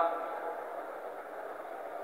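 A pause in a man's speech, filled by a steady, even hiss of background noise in the recording, with the tail of his voice dying away at the very start.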